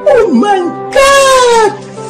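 Background music with a loud wailing voice over it: a short swooping cry near the start, then a longer cry that falls in pitch.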